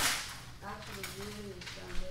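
A single sharp snap of a large flip-chart paper sheet being handled, fading quickly, then faint low voices.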